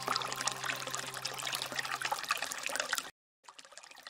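Water trickling and splashing, a dense fizzing crackle, under a held music chord that fades out about two seconds in. The sound cuts off suddenly to near silence about three seconds in.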